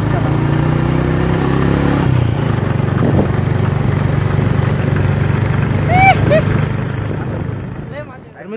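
A motorbike engine running steadily as the bike rides along, with wind noise on the microphone. A short shout of a voice cuts through about six seconds in, and the sound fades out near the end.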